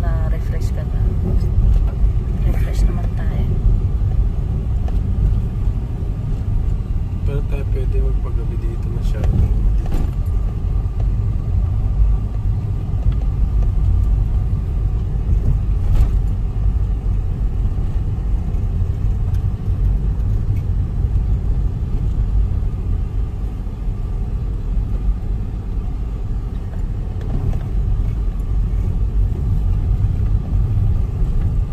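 Car cabin noise while driving: a steady low rumble of engine and road, heard from inside the car, with a few light knocks.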